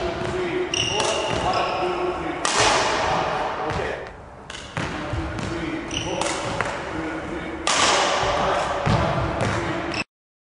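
Badminton footwork on a sports-hall court: shoes squeaking and thudding on the floor as the player lunges and moves, with racket-on-shuttle hits. Sharp shoe squeaks stand out about a second in and again about six seconds in.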